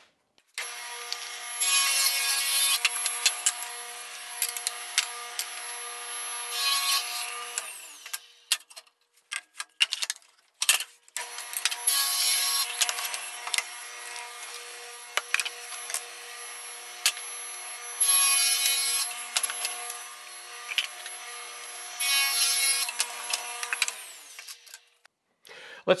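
Table saw running with a 40-tooth 7-1/4-inch circular saw blade, switched on twice. Each time the motor comes up to a steady whine, grows louder in stretches as the blade cuts through wood (twice in the first run, three times in the second), then winds down. A few clicks and knocks fall in the pause between the runs.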